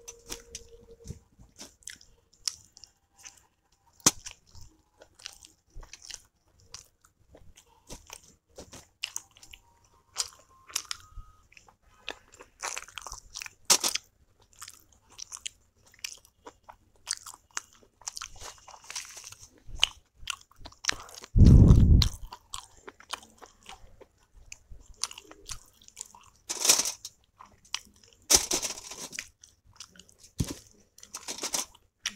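Close-miked chewing of soft steamed momos dipped in chutney: wet smacks and clicks of lips and tongue in irregular bursts. A loud, low thump sounds once, a little past two-thirds of the way through.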